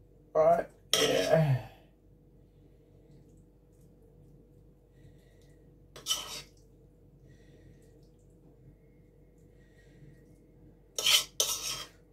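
A spoon scraping and clinking against a pan while cooked shrimp filling is spooned out, in short sudden strokes: one about six seconds in and a quick run near the end, with quiet in between.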